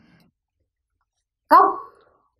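Near silence for about a second and a half, then a woman's voice says a single word.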